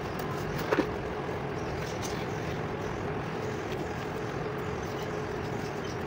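Steady background noise with a faint steady hum, like traffic, and two quick light knocks about a second in.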